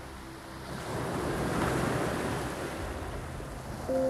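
Sea waves breaking and washing up the shore, swelling louder about a second in.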